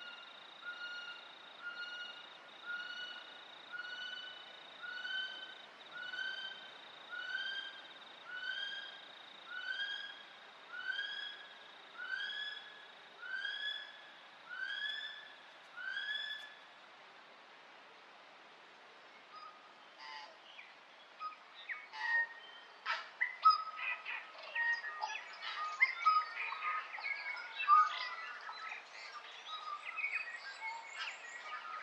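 A bird calling a long series of about fifteen whistled notes, roughly one every 0.7 seconds, each note louder and more arched in pitch than the last, over a steady high whine that stops about nine seconds in. After a short lull, from about twenty seconds in, a busy chatter of many short bird chirps.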